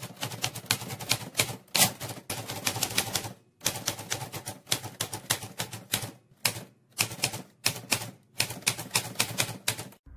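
Typewriter sound effect: keys striking in quick, irregular runs with brief pauses between them, timed to text being typed out. It stops abruptly at the end.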